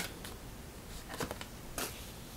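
Tarot cards handled and a card drawn and laid down on a cloth table cover, heard as a few faint, short papery swishes, about a second in and again near the end.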